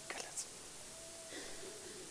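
Quiet pause in a man's speech over a microphone: a few faint breaths and soft vocal sounds near the start, a low murmur a little past the middle, over steady room hiss.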